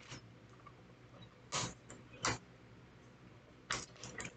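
Four short, sharp clicks spaced irregularly over a quiet room background.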